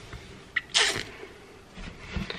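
A single short, sharp burst of breath from a person, about half a second long, about a second in.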